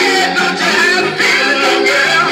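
Soul record playing from a 7-inch vinyl single on a turntable: a band with guitar.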